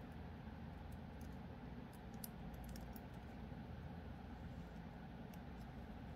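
Faint small clicks of pliers and wire against a metal hoop and beads while a sharp cut wire end is pressed down and tucked in, clustered about two to three seconds in, over a steady low hum.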